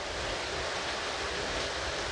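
Steady background hiss with no distinct events, even and unchanging.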